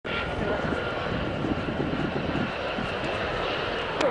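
Steady aircraft engine noise with people's voices in the background.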